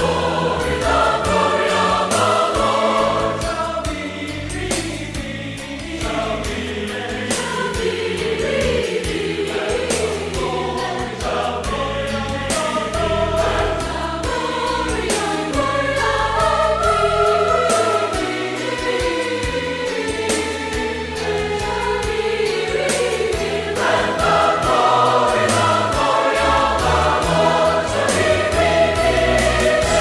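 Gospel music: a choir singing over a steady beat.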